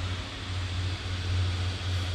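Blower fans of air-blown yard inflatables running: a steady low hum with some rushing air noise.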